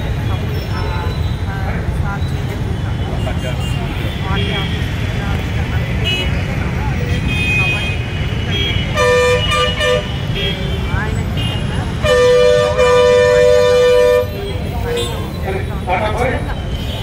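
A vehicle horn honks: a few short toots about nine seconds in, then one long blast of about two seconds near the end, over steady traffic rumble.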